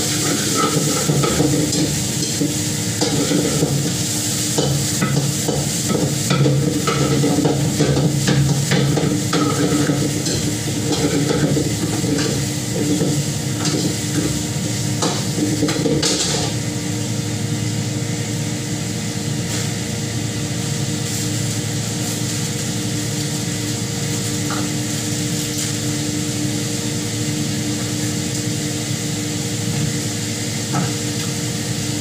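Metal spatula scraping and clattering against a steel wok while food sizzles, over a steady hum. The scraping stops a little past halfway, leaving the sizzle and hum.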